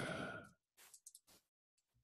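A man's voice trailing off into a breathy exhale, then a few faint keyboard clicks about a second in as a typed entry is confirmed.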